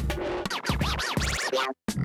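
Cheap toy electronic music keyboard played by hand, giving out chopped electronic music with arching up-and-down pitch sweeps that sound like record scratching. It cuts off abruptly for a moment near the end.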